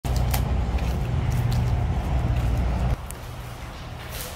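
Low, steady outdoor rumble with a few faint clicks. It drops off suddenly about three seconds in to a quieter background.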